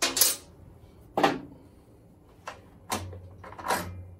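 A handful of sharp metallic clinks and knocks, about five spread over four seconds, as the axle bolt is drawn out of a moped's rear wheel hub with its spacer and brake back plate.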